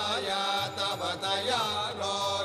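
A voice chanting a Sanskrit devotional mantra over steady held musical tones.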